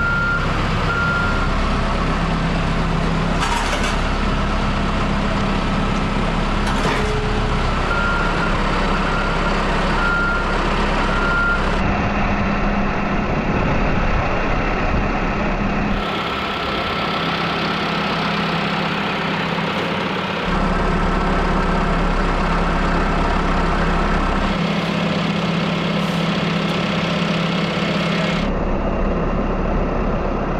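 Gehl telehandler's diesel engine running steadily under load, with its reversing alarm beeping in two stretches, at the start and again about eight to twelve seconds in.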